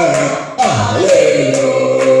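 Voices singing a slow worship song in long held notes, with a brief dip and a sliding pitch about half a second in.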